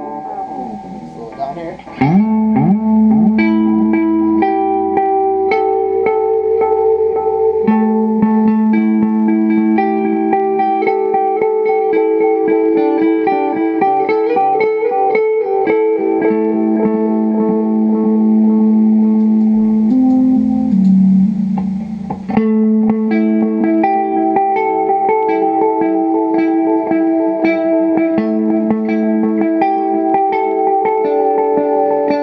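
Clean electric guitar, a Fender Jag-Stang through a Fender Supersonic tube amp, playing picked melodic lines through an LMP Wells analog delay pedal, each note trailed by rhythmic echo repeats. About a second in there is a brief swooping pitch warble in the repeats as the delay time is changed at the pedal.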